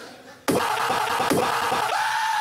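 A man's loud, rough, noisy vocal noise shouted at a microphone, starting suddenly about half a second in and ending in a short held yell.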